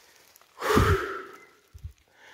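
A man's sigh, a breath out lasting about a second, starting about half a second in and fading away. A short low thump follows near the end.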